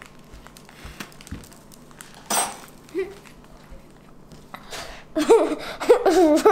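A child eating a s'more, with soft mouth and cracker sounds and one short, sharp noisy burst about two seconds in. In the last second a pitched voice sound begins, a wavering 'mmm' hum.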